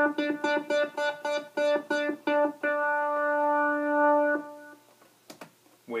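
Moog Multimoog monophonic analogue synthesizer playing quick repeated notes on one pitch, their brightness shifting as a voltage control pedal sweeps the filter, then one held note that stops about four and a half seconds in. Two faint clicks follow near the end.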